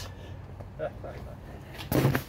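A steady low hum with a brief laugh, then a sharp knock of the camera being handled just before the end.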